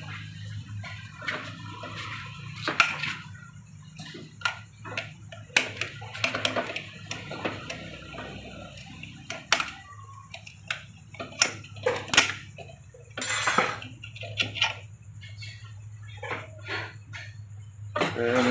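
Small metal clicks and clinks as the steel plates and retaining ring of an automatic transmission's C2 clutch pack are worked out of the clutch drum by hand, over a steady low hum. A short noisier burst of about a second comes roughly two-thirds of the way through.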